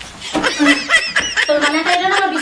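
Laughter in quick, short, choppy bursts, starting about a third of a second in.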